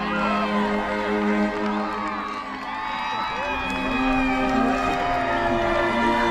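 Background music of long held notes over crowd noise: many voices shouting and cheering at once.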